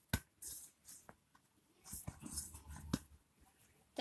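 Hands kneading and pressing a stiff maida dough on a steel plate: faint, irregular rubbing and squishing with a few light clicks.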